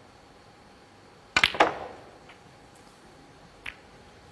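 A snooker cue tip striking the cue ball about a second in, followed a moment later by a sharp ball-on-ball click; near the end a smaller click as the cue ball reaches the balls again, against a quiet arena hush.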